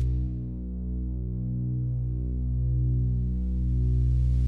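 Low, steady drone of several held tones, an ambient music bed. It dips slightly about half a second in, then slowly swells back.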